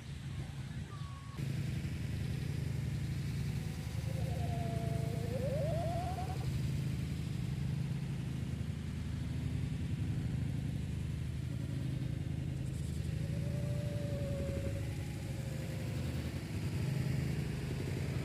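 A steady low hum of a running motor starts about a second and a half in and carries on, with a faint wavering tone twice over it.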